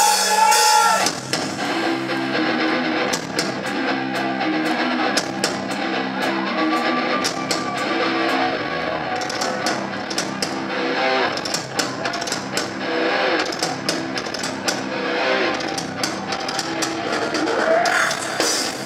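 Live heavy rock band playing: a distorted electric guitar riff with bass, drum kit and frequent cymbal crashes, coming in about a second in after a held note.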